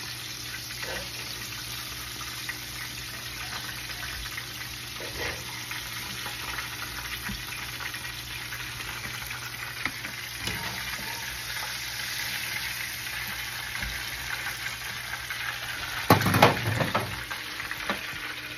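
Breaded catfish fillets deep-frying in hot oil in a cast-iron skillet, a steady sizzle, with a wire skimmer working through the pan. A brief louder clatter near the end.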